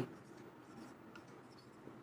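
Marker pen writing on a whiteboard, faint scratching strokes of the tip with a few light ticks.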